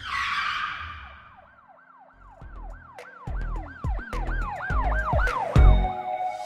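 Logo intro sound effect: a whoosh, then a siren-like wail that rises and falls about three times a second over deep bass thuds that grow louder as it builds.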